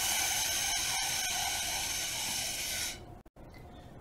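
Air rushing out of an inflated balloon through a drinking straw taped to its neck with duct tape: a steady hiss that stops abruptly about three seconds in.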